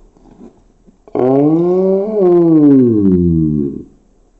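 A woman's long, drawn-out groan, starting about a second in and lasting nearly three seconds, its pitch rising and then falling.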